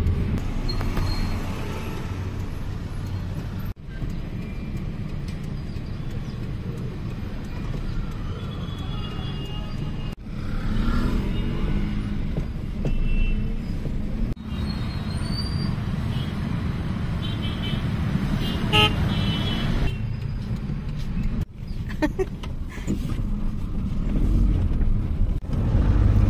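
Steady engine and road rumble inside a taxi moving through city traffic, with short horn toots from the surrounding vehicles several times in the middle of the stretch.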